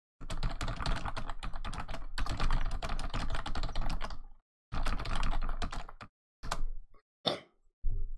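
Fast typing on a computer keyboard in two long runs of key clicks, then a few separate key presses near the end.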